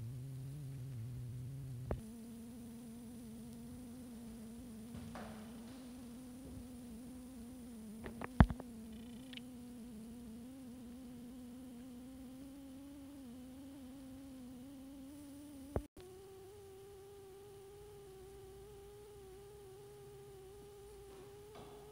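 A steady, slightly wavering hum with a few overtones that creeps up in pitch and then steps higher after a click near the end, with a few sharp clicks or knocks along the way, the loudest about eight seconds in.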